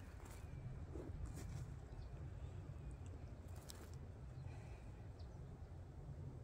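Faint scraping and rustling of bare hands digging into loose potting soil and wood-chip mulch in a wooden planter, a few soft scrapes scattered over a low, steady background hum.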